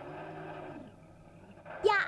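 Video-game car engine sound playing from a TV, a steady hum whose pitch rises and falls. A voice cuts in near the end.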